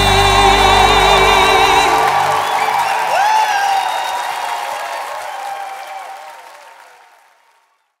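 A band's final held chord and a sung note with vibrato end about two seconds in, giving way to audience applause and cheering with a few whoops, which fades out near the end.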